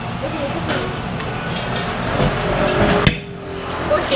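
Claw machine's claw at work among prize boxes, clicking and knocking over steady arcade noise, with one sharp knock about three seconds in.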